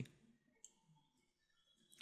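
Near silence with a faint computer keyboard click about two-thirds of a second in and a fainter one just after.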